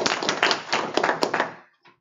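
Audience applauding: dense, quick handclaps that die away about a second and a half in.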